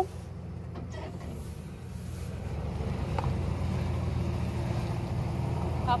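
Pickup truck engine idling steadily, a low hum.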